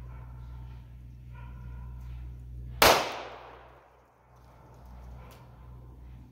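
A single gunshot from a Taurus 605 snub-nose .357 Magnum revolver, a sharp report a little under three seconds in that echoes and dies away over about a second.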